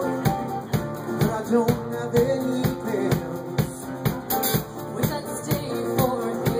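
Live band music: acoustic guitar, electric bass and piano playing over a steady beat, with male and female voices singing.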